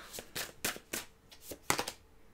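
A deck of cards being shuffled and handled by hand: a run of quick, uneven card snaps and taps, the sharpest near the end.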